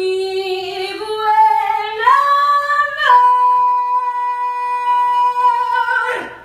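A woman singing a wordless melody with little or no accompaniment. Her pitch steps up twice, dips slightly about halfway, then settles on one long held note for the last three seconds.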